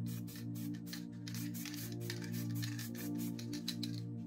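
A spray-paint aerosol can sprayed in a quick series of short hissing bursts that stop near the end, over soft, steady background music.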